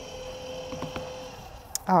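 A few faint light knocks as a plastic fabric-cutting die is taken from the cutter and set down on a cutting mat, over a faint steady hum.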